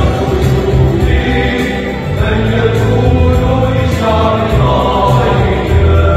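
Mixed choir of women's and men's voices singing a Christmas hymn, over a deep bass line that moves in steady held notes.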